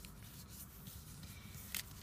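Faint rustling of a folded origami paper strip being pressed and creased flat by fingers, with a short tick near the end.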